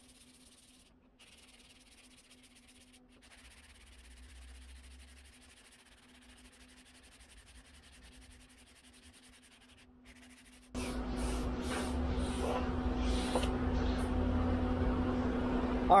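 Hand sanding block rubbing over primer on a car body panel, a rasping hiss in uneven back-and-forth strokes. It is faint at first with a steady hum under it, then turns much louder about eleven seconds in.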